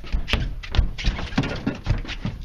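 A man scrambling across a boat deck: a rapid, irregular clatter of footfalls and thumps, with a few short grunting vocal sounds.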